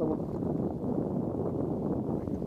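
Steady wind buffeting the microphone, a dull rushing noise.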